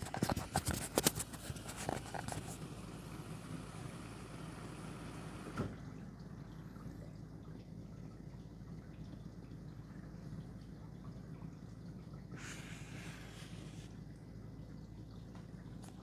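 Samsung Bespoke dishwasher running its prewash, heard with the microphone held close to it: a quiet, steady low hum of the pump with faint water noise, and a brief louder swish of water around three-quarters of the way through. Rustling and clicks in the first couple of seconds come from the microphone being moved up to the machine.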